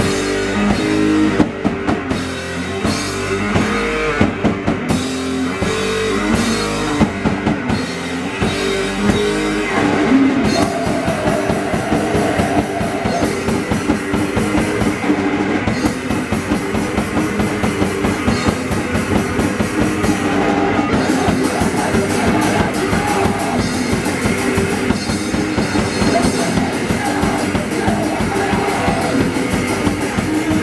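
Live d-beat hardcore punk band playing loud: distorted electric guitar, bass and a drum kit. About ten seconds in, the drums settle into a fast, driving beat.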